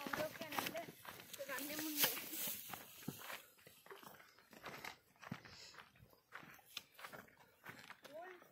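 People's voices talking in the first few seconds, then scattered footsteps and scuffs on a dry dirt trail.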